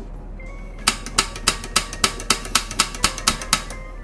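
Piezo igniter of a SOTO G-Stove camping gas burner clicking about eleven times in quick succession, roughly four clicks a second, while the gas is turned on to light it.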